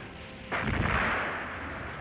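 An explosion: a sudden blast about half a second in that fades away slowly as a rumble.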